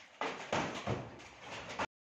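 Old timber floorboards being wrenched up, giving a few sharp wooden knocks and creaks about a second apart. The sound cuts off abruptly near the end.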